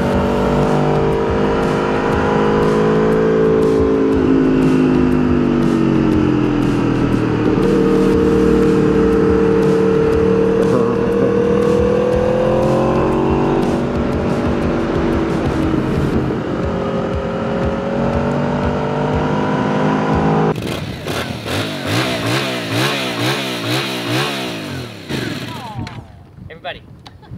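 Aprilia RSV4 V4 engine heard on board while riding in second gear, its note slowly rising and falling with the throttle. About twenty seconds in it cuts off abruptly and a warbling sound with a quickly wavering pitch takes over.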